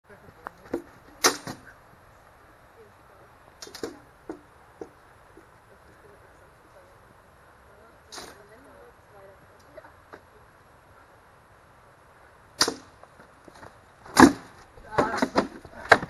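Swords striking round shields in full-contact sword-and-shield sparring: single sharp hits spaced a few seconds apart, the loudest about fourteen seconds in, then a quick flurry of several blows near the end.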